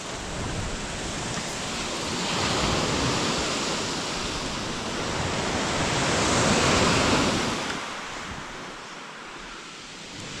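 Sea waves breaking and washing back on a shingle beach, the surge swelling twice and easing off near the end, with wind buffeting the microphone.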